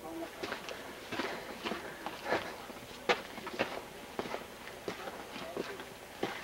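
Footsteps of people walking along a trail, about two steps a second, each step a sharp crunch or tap, with faint voices in the background.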